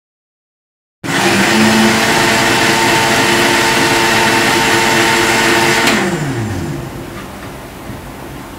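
National electric blender with a stainless steel jar, switched on about a second in and running at a steady high speed. Near six seconds it is switched off and the motor winds down with a falling pitch.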